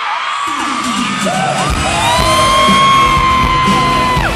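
Crowd of fans screaming in a large hall as pop concert music starts up over the PA about half a second in, with a heavy beat coming in shortly before two seconds. Long high-pitched screams carry on over the music.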